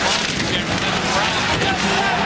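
Hockey arena crowd noise, a dense steady roar, with a man's voice talking over it.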